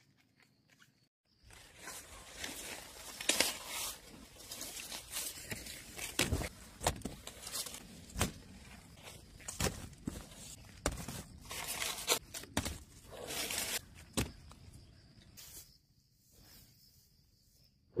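Dry corn plants rustling and crackling while corn is picked by hand, with many sharp snaps and knocks among the rustle. It starts after a second of quiet and stops about two seconds before the end.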